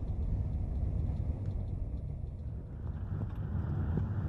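Steady low engine and road rumble of a vehicle driving, heard from inside the cabin, growing a little louder and rougher about three seconds in as it picks up speed.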